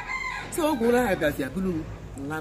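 A chicken calling in the background, in the first half-second, while a woman speaks over it.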